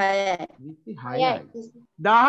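A man speaking, drawing out a syllable at the start and another about a second in.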